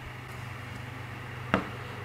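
Quiet background with a steady low electrical hum and faint hiss, and a single sharp click about one and a half seconds in.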